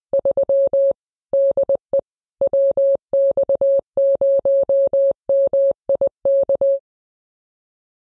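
Morse code (CW) sent as a single steady beep of about 600 Hz, keyed in quick dots and dashes, stopping shortly before the end.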